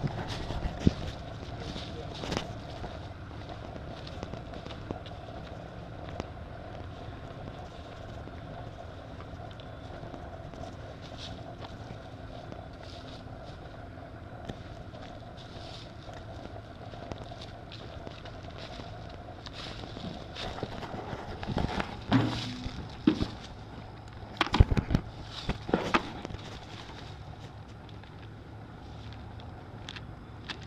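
Footsteps crunching through dry fallen leaves, over a steady low hum of a vehicle engine running. Clusters of louder rustles and knocks come about two-thirds of the way through.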